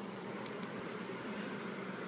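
Steady indoor background noise: an even low hiss with a faint hum. There are a couple of barely audible light ticks and no distinct event.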